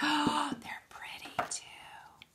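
A woman's gasp of surprise: a sharp, breathy intake of breath lasting about half a second.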